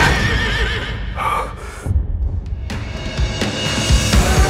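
A horse whinnying once, a wavering high call in the first second, over film-score music that continues underneath, dips briefly and swells again near the end.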